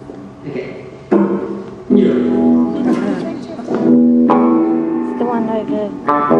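Electric guitar through a stage amplifier: chords struck three times, about a second in, at two seconds and again past four seconds, each left ringing, with a slight bend in pitch near the end.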